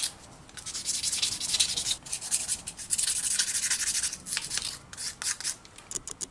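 A small metal plane part rubbed by hand back and forth on sandpaper laid flat, in runs of quick scratchy strokes. There are short pauses about two and four seconds in, and the strokes grow sparser near the end.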